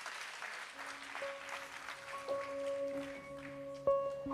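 Audience applause fading out as quiet music begins. Soft, sustained piano notes enter about a second in, with new notes struck every second or so and left to ring.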